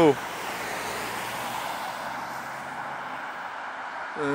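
Road traffic on a nearby dual carriageway: a steady hiss of tyres and engines from passing cars, easing slightly toward the end.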